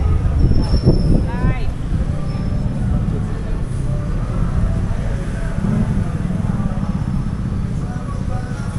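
Street ambience: a steady low rumble of road traffic and vehicle engines, with people talking in the background. A short run of quick rising chirps comes about a second and a half in.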